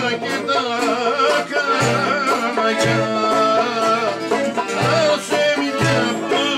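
Greek folk ensemble playing live: a plucked laouto and a wavering bowed or sung melody line over a low drum beat about once a second.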